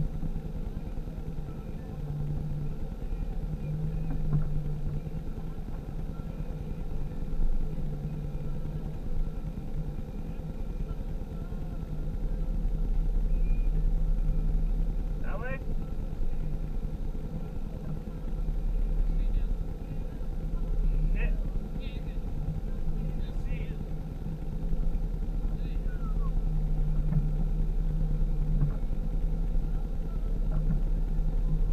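Vehicle engine running steadily at a crawl, a low hum that swells and eases a little in level. A few short high chirps come through in the middle, one sweeping sharply upward.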